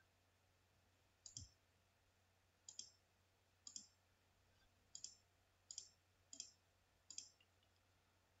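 Seven faint computer clicks, each a quick double tick, coming about once a second at an uneven pace: the clicks that step the on-screen chess game forward move by move.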